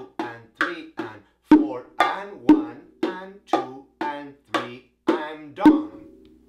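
Bongos played with bare hands in a slow, even martillo ("hammer") pattern, about two strokes a second, with a few louder open tones standing out among the lighter touches.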